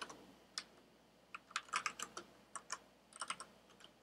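Computer keyboard typing: separate keystrokes in short, irregular bursts, with a quick run of keys about a second and a half in.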